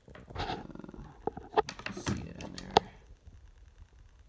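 Handling noise of a stock Baofeng rubber antenna being turned over in the fingers: a handful of sharp clicks and short rustles, the loudest a little before three seconds in.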